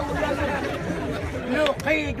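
Men's voices talking, more than one at once, with the chatter of a crowd around them.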